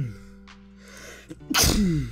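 A person sneezing twice: the tail end of one sneeze right at the start, then a second loud sneeze about one and a half seconds in. Quiet background music plays underneath.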